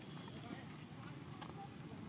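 Faint outdoor background: a low steady rumble with distant, indistinct voices and a couple of faint clicks.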